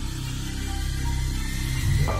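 Background music: sustained low notes with a hiss-like swell building toward the end.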